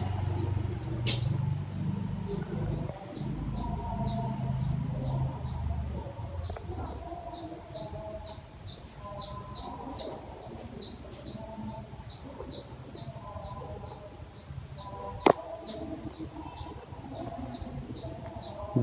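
A bird repeating a short, high chirp in an even, rapid series, about four a second, without a break. Two sharp clicks stand out, one about a second in and one near the end.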